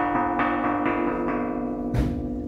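A hollowed-out aerial bomb casing of thick iron, hung as a church bell, struck over and over at about five strikes a second, ringing with a steady metallic tone.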